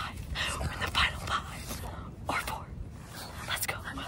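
Hushed whispering and breathy voices close to a phone microphone, over a low rumble of wind on the microphone.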